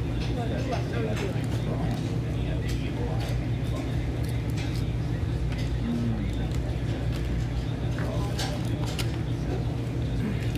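Restaurant dining-room ambience: a steady low hum, with background voices and occasional short clicks like plates and utensils.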